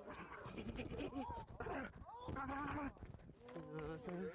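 Several men's voices calling out and talking, with a few drawn-out vocal sounds that rise and fall in pitch.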